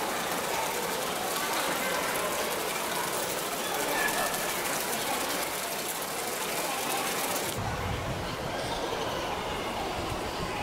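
Background ambience of a crowd of visitors, many voices talking indistinctly with no words made out. About seven and a half seconds in the sound changes abruptly: the hiss drops and a low rumble comes in.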